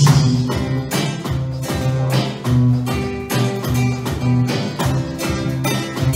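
Acoustic guitar strummed in a steady rhythm with an electronic drum kit keeping the beat, a lively Brazilian MPB groove without vocals.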